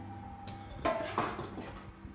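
Light clatter of kitchenware being handled: a sharp tap about half a second in, then a short knock and scrape about a second in, over a faint steady hum.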